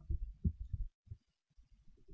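Faint, irregular low thumps and rumble for about the first second, then near quiet with a few soft knocks near the end. This is low-pitched handling noise picked up by the microphone while a digital pen writes on a drawing tablet.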